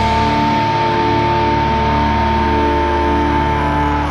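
Pop-punk song with electric guitars ringing out one sustained chord, a high note held steady over it.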